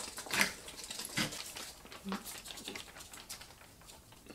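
Foil drink pouches being handled, giving scattered light crinkles and small plastic clicks.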